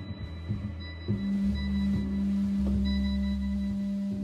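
A small rock band playing live in a rehearsal room: a few light drum taps in the first second, then a long held note ringing over a bass line that changes note twice.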